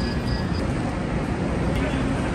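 Steady rushing hum beside a Haramain high-speed train standing at the platform, with a faint high beep repeating about three times a second that stops about half a second in.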